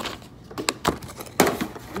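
Pringles cans being set down on a table and shuffled into a row, giving several short knocks over about a second and a half.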